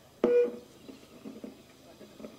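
A single short spoken word over a public-address microphone, then a pause with only faint background sound.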